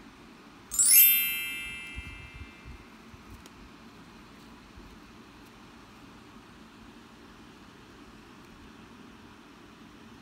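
A single bright ringing ding that starts suddenly and fades out over about a second, followed by a few soft low knocks.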